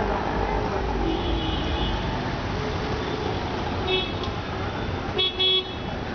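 Street traffic noise with vehicle horns tooting: a longer honk about a second in, a short one about four seconds in, and two short, loud toots near the end.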